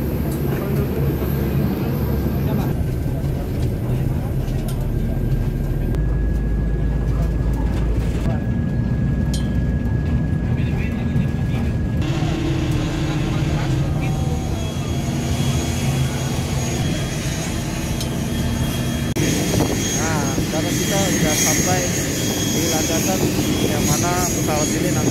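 Steady low rumble of airport apron vehicle and aircraft engines, with passengers' voices in the background. In the last few seconds a thin high engine whine sits over the rumble.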